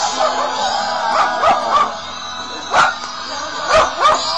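A dog barking about five times, three barks close together then two spaced about a second apart, over live pop-rock concert music playing from a radio.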